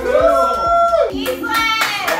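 A long held, whooping vocal note from the group, then several people clapping their hands near the end.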